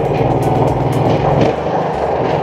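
Firman SFE460 18 HP, 458 cc four-stroke petrol engine running steadily at about 70% throttle, driving a wooden boat's propeller.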